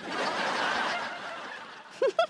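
Laughter from many people blended together, as in a sitcom laugh track. It swells in quickly and fades away over about two seconds.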